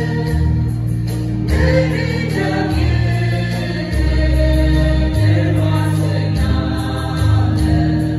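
Mixed choir of men and women singing a hymn in unison, with low held notes beneath the voices that change about once a second.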